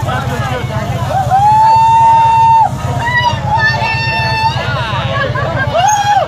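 Motorcycle engine running steadily in a burnout pit, a continuous low rumble, with spectators shouting and whooping over it. There is one long held whoop about a second in, more calls around the middle, and another near the end.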